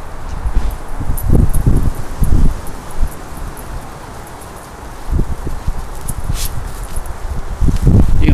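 Rustling in the grass and irregular low thudding rumbles as a dog runs across a lawn carrying an old, worn basketball in her mouth.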